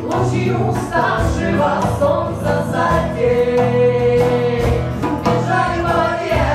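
Live acoustic folk band: voices singing together over acoustic guitar and djembe hand drum, with one long held sung note a little past the middle.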